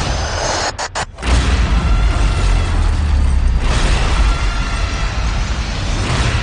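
Cinematic explosion sound effect: a brief burst, then about a second in a loud, deep, sustained booming rumble that swells again midway, under trailer music.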